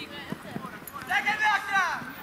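Players on a youth football pitch shouting, one high, loud call about a second in, with a few short dull knocks of feet or ball on the turf before it.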